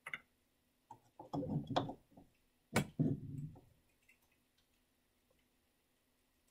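Painting tools being handled at an oil palette and easel, clicking and knocking: a few light ticks in the first two seconds, then one sharp knock about three seconds in, each followed by brief duller rubbing.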